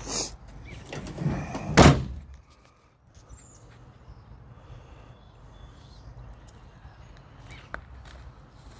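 A single loud thump about two seconds in, followed by a faint low rumble.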